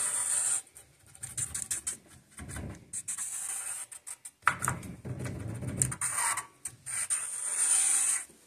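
Marker tip scraping across a steel plate in a series of uneven strokes with short pauses, as a line is drawn along the plate.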